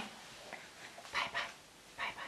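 Two short, soft vocal sounds a little over a second in, close to the microphone, against quiet room tone.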